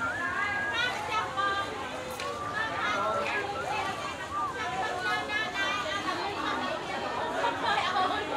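Several people talking at once in a busy open-air market: overlapping voices of vendors and shoppers in steady chatter.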